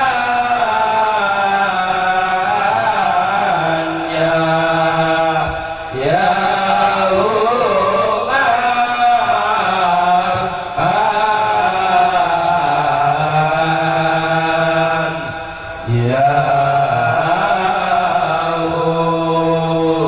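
A group of men chanting an Islamic devotional chant together through microphones, in long drawn-out melodic phrases with short breaks between them.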